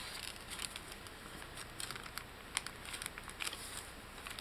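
Paper rustling and crinkling as a small card is handled and slid into a paper pocket of a handmade tea-dyed paper journal, with scattered light taps and clicks, the sharpest about two and a half seconds in.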